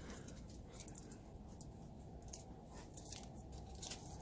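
Faint rustling and small snaps of leaves being pulled off a young pluerry tree's twigs by hand, a quiet scatter of short crackles.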